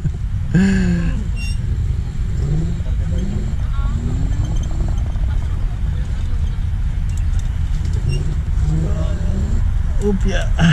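Steady low wind rumble on the microphone of an electric scooter rider moving slowly along a paved path. Faint voices of people nearby come and go.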